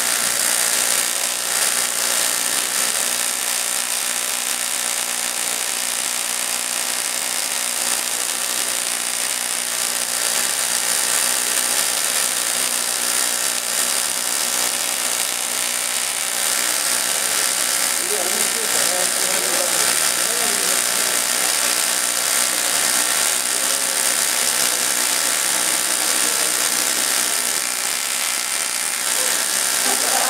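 Homemade Tesla coil running, a steady, loud electric buzz from its spark discharges that holds without a break.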